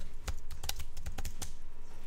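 Computer keyboard being typed on: a quick, uneven run of keystrokes, about five a second.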